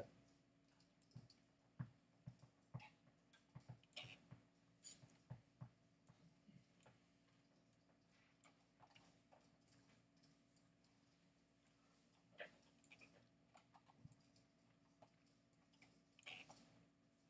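Near silence: faint room hum with short, irregular clicks of a computer mouse clicking and dragging.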